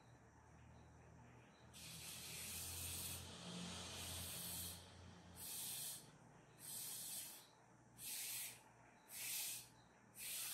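Breath blown hard through a drinking straw to push wet black paint across paper: a hissing puff of about three seconds, then four short puffs about a second apart.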